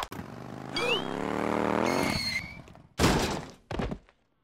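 Cartoon sound effects of a bike crash: a whine that rises in pitch, then a loud crash about three seconds in, with a smaller clatter just after it.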